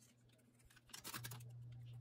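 Adhesive tape runner drawn across paper, a short scratchy rasp about a second in, over a faint steady low hum.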